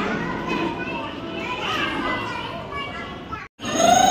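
A group of young children's voices chattering and calling out over one another, with adults' voices among them. The sound cuts out sharply for a moment near the end, and a louder sustained tone begins.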